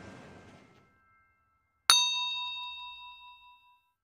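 A single bright bell-like ding, struck about two seconds in and ringing out for nearly two seconds as it fades: a chime sound effect for the closing title card. Earlier sound fades away in the first second before it.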